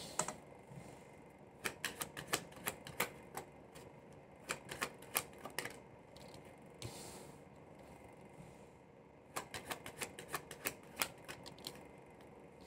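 A deck of tarot cards being shuffled in the hands and dealt onto a table: three runs of quick card clicks, with a short sliding swish in the middle.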